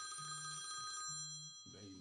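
Telephone ringing with an incoming call: a chord of high steady tones for about the first second, over a low buzz that pulses on and off about once a second.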